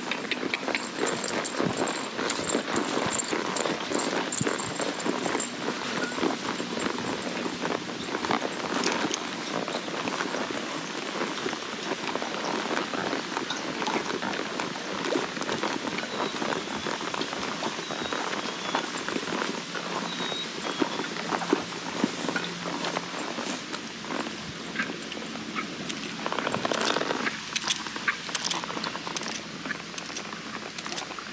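A horse being ridden through tall pasture grass: a steady run of soft, irregular hoof falls on turf mixed with grass rustling against its legs, with a louder rustle near the end.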